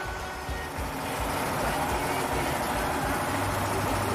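A small stationary engine running steadily, driving a grain polishing machine through a long flat belt as it polishes sorghum grain into sorghum rice. Low, uneven thumping from the engine runs under the steady running of the machine.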